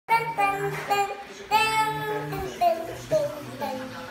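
A child singing a quick melody without words on repeated "deng deng deng" syllables, a string of short notes that step up and down in pitch.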